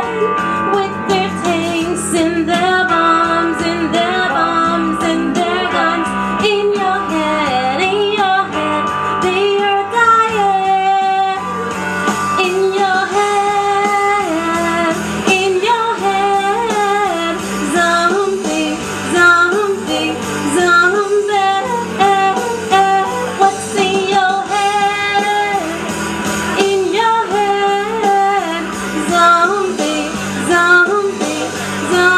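A woman singing over a karaoke backing track with guitar, in one continuous line of melody.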